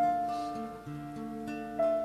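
Acoustic guitar playing a few plucked notes that ring on, with no singing. New notes come in about a second in and again near the end.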